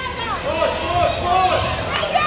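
Basketball game on an indoor hardwood court: a sharp knock of the ball about half a second in, then ball and court noise during the rebound, with shouting voices.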